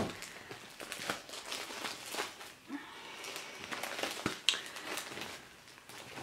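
Clear plastic sheet protectors in a ring binder crinkling and rustling as pages of stationery are turned and handled, with irregular crackles and a sharper crackle at the start and again near the end.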